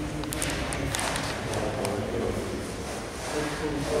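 Indistinct talk of several people in a large, echoing hall, with a few sharp clicks in the first second or so.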